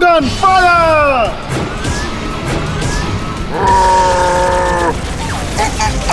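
Cartoon action soundtrack: music with rushing sound effects under it. It opens with a voice-like cry that falls steeply in pitch, and about four seconds in a steady held note lasts roughly a second.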